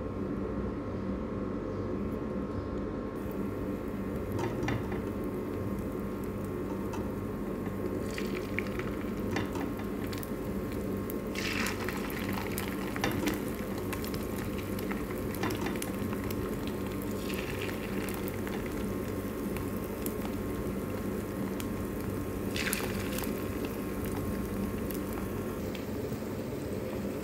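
Cornstarch-coated chicken breast cubes frying in hot oil in a nonstick pan: a steady sizzle, with brief louder sizzles every few seconds as more pieces go into the oil, over a steady low hum.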